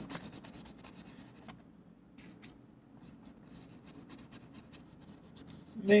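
A stiff flat bristle brush scrubbing paint onto paper in quick short strokes, a faint dry scratching. The strokes come thickest in the first second and a half, then thin out.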